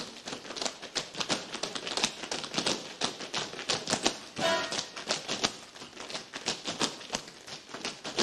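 Several dancers' tap shoes striking a stage floor in a fast, uneven tap routine: dense clusters of sharp clicks.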